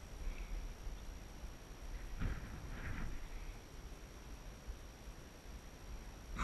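Wind buffeting the microphone, with a couple of short, sharp breaths about two and three seconds in.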